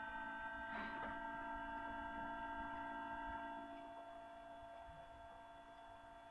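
Faint steady electrical hum made of several fixed tones, with a soft brief rustle about a second in; it fades slightly in the second half.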